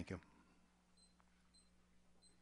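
Near silence: room tone with a steady low hum, and three faint, short, high-pitched beeps spaced about half a second apart.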